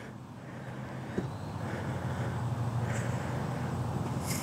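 Distant road traffic: a steady low engine rumble that grows a little louder.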